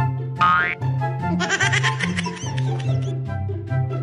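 Comedic background music with a repeating bassline, overlaid with cartoon sound effects: a quick rising boing about half a second in, then a long warbling effect from about a second and a half to three seconds.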